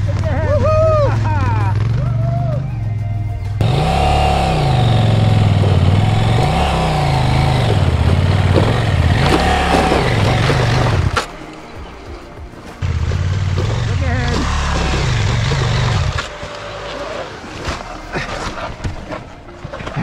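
Adventure motorcycle engine revving up and down again and again as it claws up a loose rocky hill, the rear tyre spinning and throwing dirt and stones. The engine drops away briefly about eleven seconds in, revs again, then goes quiet near the end.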